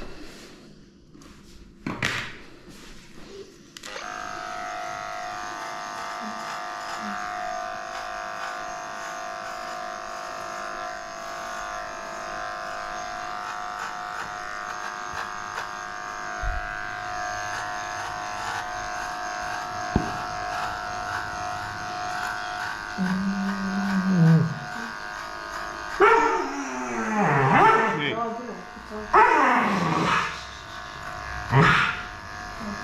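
Electric dog-grooming clippers switch on a few seconds in and hum steadily as they shave through a heavily matted coat. Near the end the dog cries out several times over the clippers.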